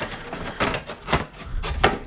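Ceramic coffee mug handled close to the microphone, knocking about four times, the loudest knock near the end.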